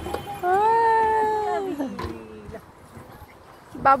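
A child's long drawn-out vocal call, held on one pitch for over a second and then sliding down in pitch.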